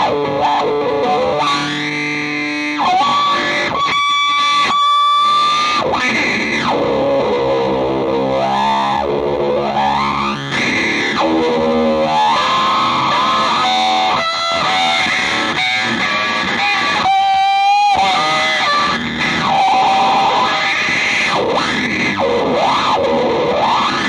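Solo electric guitar improvisation played through effects pedals, a dense, noisy wall of sound with pitches sliding up and down and abrupt changes of texture.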